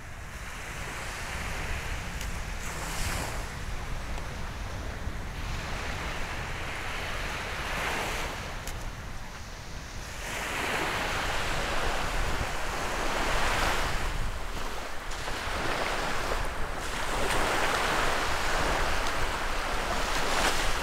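Small surf breaking and washing up on a sandy beach, in swells every few seconds that grow louder about halfway through.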